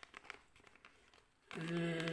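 Faint crinkling of a small clear plastic packaging bag as it is handled. About one and a half seconds in, a man's voice comes in louder, holding one steady note.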